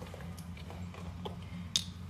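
A few faint ticks and one sharper click near the end, from a metal spoon and a ceramic bowl being handled, over a steady low hum.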